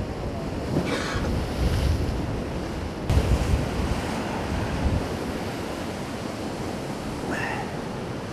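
Sea surf washing and breaking over shoreline rocks, with wind buffeting the microphone; a louder surge of rushing water comes suddenly about three seconds in.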